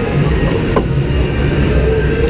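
Ice hockey skates scraping and carving on the ice in a continuous rumble, with one sharp knock a little before the middle.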